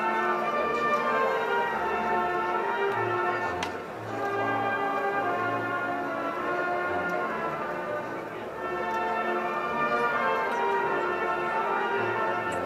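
A band playing slow music: sustained chords over a stepping bass line, in phrases that dip briefly about four and eight and a half seconds in.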